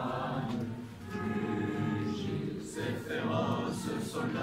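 A national anthem sung in chorus with musical accompaniment, the voices held on long notes, dipping briefly about a second in.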